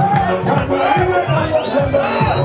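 Live music with a steady bass beat, a man singing or calling into a microphone and a crowd shouting along. A thin high tone rises and then holds near the end.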